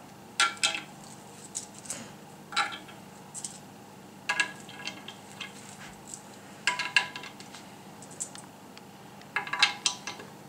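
Small hard parts clinking and tapping against a radar mount's top plate as they are handled. The clinks come in five short clusters, about every two seconds, each ringing briefly.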